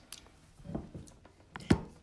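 Faint rustling handling noise, then one sharp knock near the end.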